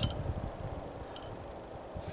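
Quiet background noise: a low rumble that fades away in the first half second, then a faint steady hiss, with one faint short click about a second in.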